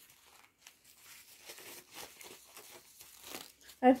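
Soft, irregular crinkling and rustling of a disposable diaper's plastic-backed material as it is unfolded and handled.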